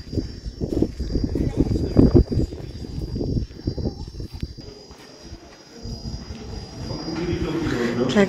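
Footsteps crunching on gravel while walking, with a steady high insect drone behind. The crunching dies away about five seconds in.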